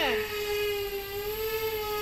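The twin propellers of a 3D-printed bicopter in flight make a steady whine with many overtones. It dips slightly in pitch around the middle and then rises again.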